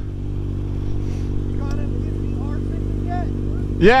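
Kawasaki ZX-6R 636's inline-four engine idling steadily while stopped, with a faint voice talking in the background and a spoken word near the end.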